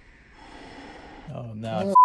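Packing tape being pulled off a handheld tape gun across a cardboard box, a quiet rasping rip. About two-thirds of the way in, a man's drawn-out voiced exclamation begins and becomes the loudest sound.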